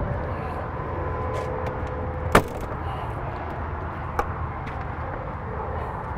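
Airstream travel trailer's screen door and aluminium entry door being handled: a sharp latch click a little over two seconds in and a lighter click about four seconds in, over a steady background hum.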